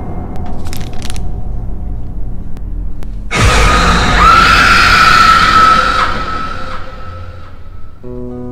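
Low, dark horror score, then about three seconds in a sudden loud jump-scare hit: a high, held scream over harsh noise, lasting about two and a half seconds before fading out.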